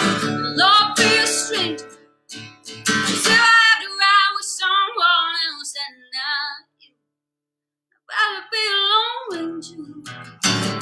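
A woman singing a country song with vibrato over strummed acoustic guitar. About seven seconds in, both stop for a moment, then the voice comes back in.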